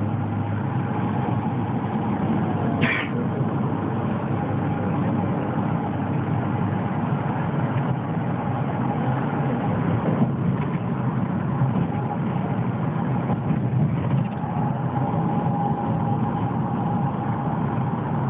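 Steady road and engine noise heard from inside a vehicle's cabin while cruising at highway speed, with a brief high squeak about three seconds in.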